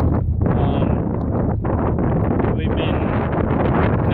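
Pickup truck cab noise while driving: a steady low engine and road rumble with wind buffeting the microphone.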